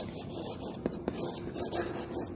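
Chalk scratching on a blackboard as words are written, with two sharp taps of the chalk against the board about a second in.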